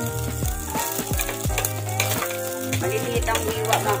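Chopped garlic tipped into hot cooking oil in a stainless steel saucepan and sizzling, with several sharp clicks of a spoon or bowl against the pot. Background music with a steady bass line plays under it.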